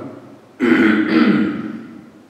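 A man clearing his throat: one loud, rough burst lasting about a second, starting about half a second in.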